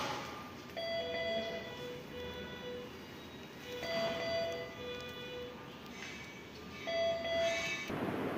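A two-tone electronic chime, a higher note falling to a lower held note, repeating three times about three seconds apart.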